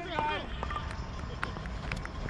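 A voice calls out briefly at the start over steady open-air background noise, followed by a couple of faint clicks.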